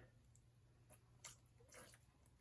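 Near silence, with a few faint short sounds as water is squirted from a squeeze wash bottle onto a strip of tape in a plastic tub.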